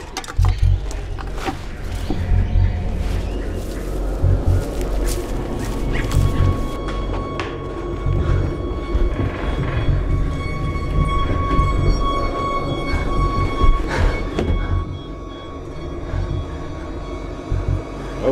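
Tense horror-film score: a deep, unevenly pulsing bass under long held high tones, with a few sharp hits.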